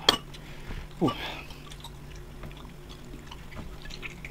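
Quiet wet eating sounds of grilled chicken being torn apart by hand and chewed, faint scattered smacks and ticks over a low steady hum. A sharp click comes right at the start, and a short grunting exhale about a second in.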